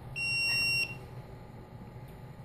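A single steady high-pitched electronic beep lasting under a second, heard over a continuous low hum.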